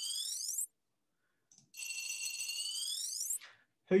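Heavily processed sound effect of a coin turning over a metal tray: a high ringing tone with several overtones that sweeps sharply up in pitch at its end. It is heard twice, with about a second of silence between.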